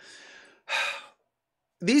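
A man's audible breath between phrases: a faint airy hiss, then a louder breath about 0.7 s in lasting roughly half a second. Speech resumes near the end.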